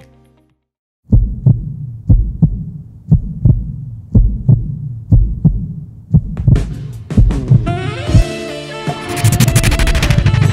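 Heartbeat sound effect: paired low thumps about once a second, starting about a second in after a brief silence. Music swells in over it in the last few seconds.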